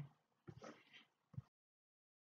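Near silence in a pause between spoken sentences: a few faint, brief sounds in the first second and a half, then complete silence.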